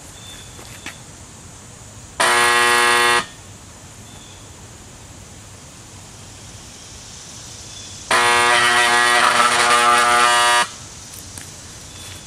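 Restored 1926 Federal type 2 siren's rewound motor buzzing on 120-volt AC instead of spinning up: two loud bursts at one steady pitch, about a second and then about two and a half seconds, each starting and stopping abruptly. The fault lies in a stator winding shorted where its enamel was scraped during assembly, though the owner at first takes it for a motor wired for DC.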